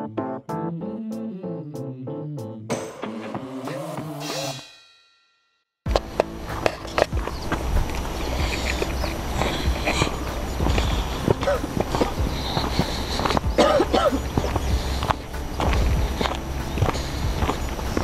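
Keyboard background music that fades out about five seconds in. After a brief silence come wind buffeting an action camera's microphone and footsteps on a dirt trail.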